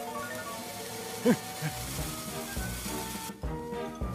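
Lit firework fuse fizzing over background music, the hiss cutting off suddenly a little after three seconds in.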